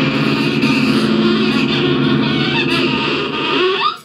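Dense improvised noise music from amplified tabletop objects and electronics: a sustained low drone under a fizzing, scraping layer. Near the end a pitch slides sharply upward, and the sound then cuts out abruptly.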